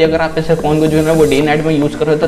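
Speech only: a man talking, with a drawn-out hissing sound about a second in.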